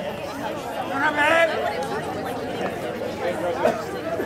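Baseball spectators and players chattering and calling out, several indistinct voices overlapping. A higher voice calls out loudly about a second in, and there is a short sharp knock near the end.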